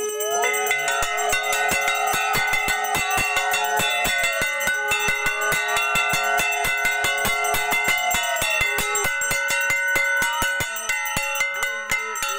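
Brass puja hand bell rung rapidly and without a break, its clapper strikes running together into a continuous ringing. Over it come two long blown notes from a conch shell, each about three and a half seconds.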